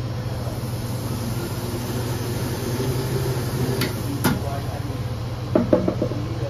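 Steady low hum of a machine running, with two sharp clicks about four seconds in and a short clatter near the end as a cup is worked under the dispenser spout.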